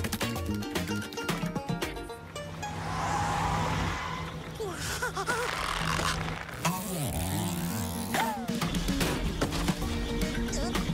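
Cartoon soundtrack: background music with a steady beat, which gives way in the middle to a steady low truck-engine hum, with wobbling and sliding whistle-like sound effects. The music comes back near the end.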